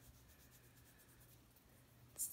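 Near silence with faint rubbing of hands as body oil is spread over the skin.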